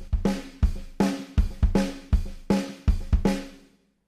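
Programmed drum kit loop from EZdrummer 2 playing through heavy effects, mainly tape-drive saturation and drum sustain. There are about three hits a second, each leaving a pitched, ringing tail, and the loop stops shortly before the end.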